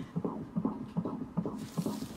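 Fetal heart monitor's Doppler speaker playing the unborn baby's heartbeat during labour: a fast, even whooshing pulse over a low hum, with a brief hiss near the end.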